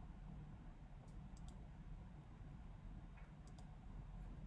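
Near silence over a low room hum, with a few faint clicks of a computer mouse: a quick cluster of three about a second in and a pair near the end.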